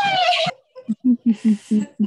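Group laughter-yoga laughter: a high-pitched falling 'woo' at the start, a short pause, then rhythmic ha-ha laughter pulses, about six a second.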